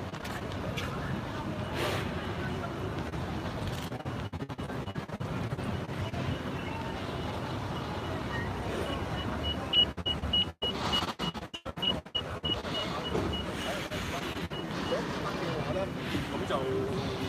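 Street noise of a crowd, with voices and vehicle traffic, over a steady din. A run of evenly spaced high electronic beeps starts about ten seconds in and lasts several seconds. The audio cuts out briefly several times.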